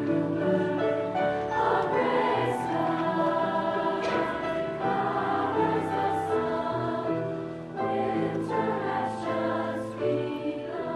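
Women's choir singing in harmony, holding sustained notes that change every second or so.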